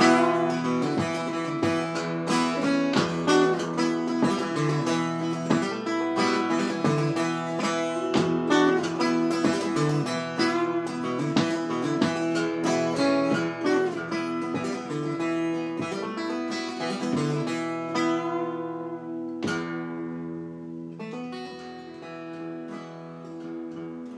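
Solo acoustic guitar playing an instrumental passage, quick picked notes over ringing chords. About three-quarters of the way through it thins out to a few strummed chords left to ring and fade.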